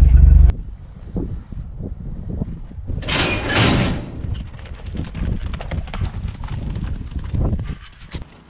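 A brief loud wind rumble on the microphone cuts off half a second in. After it come uneven hoofbeats on dirt as a calf runs out of a metal roping chute, with a louder clattering rush about three seconds in.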